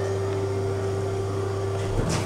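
Steady hum of a 1998 KONE hydraulic lift car travelling down, with a constant low drone and a steady tone that ends as the car arrives at the ground floor, followed by a sharp click at the very end.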